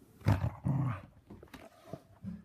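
A keeshond growling twice in quick succession in the first second, the second growl longer, while it keeps hold of its toy. A few faint clicks follow.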